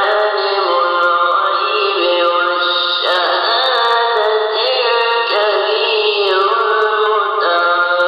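Vocal music: a chanted melody sung in long, wavering held notes that turn to a new pitch every second or two.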